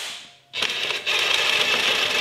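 DeWalt cordless impact gun hammering a 14 mm socket on a long extension, spinning off the upper engine mount nut. A short burst starts about half a second in, then after a brief break a longer, steady run.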